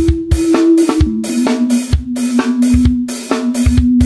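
Instrumental rock music: a drum kit playing a steady beat of kick and snare hits under a sustained note that drops lower about a second in.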